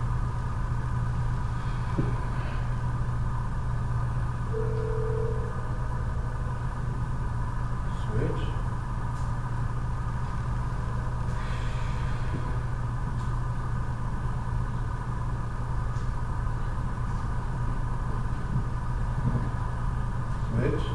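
Steady low mechanical hum of room machinery in a large hall, with a fainter steady higher whine above it and a few faint brief sounds.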